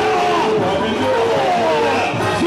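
Live samba-enredo: voices singing over a full samba band, with no break in the sound.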